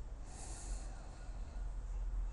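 A person's short breath, a hiss lasting about half a second, over a low steady hum.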